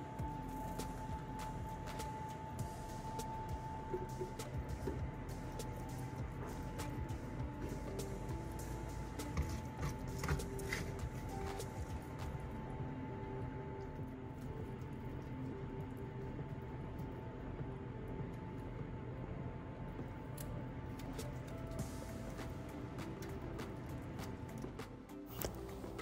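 Quiet background music with a steady held tone, and faint scattered clicks from a spoon scooping roasted squash into a blender jar.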